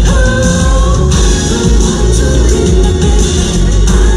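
Amplified live pop music with a lead vocal, sung through the stage sound system and heard loud and steady from within the audience.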